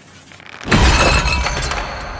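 A sudden loud crash about two-thirds of a second in, with a deep boom beneath it, dying away slowly over the next second: a trailer's impact sound effect.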